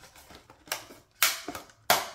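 Thin plastic clicking and crackling as a clear plastic window panel is pressed into a cut plastic bottle: three sharp clicks a little over half a second apart, the middle one with a short crackle.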